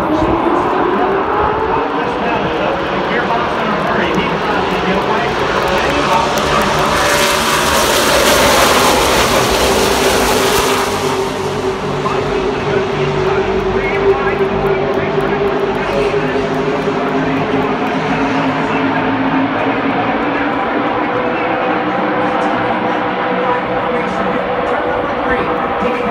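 A pack of NASCAR race trucks' V8 engines at full throttle, taking the green flag. Their pitch rises at first. The sound is loudest as the field passes about seven to eleven seconds in, then carries on as a steady drone as they run on around the track.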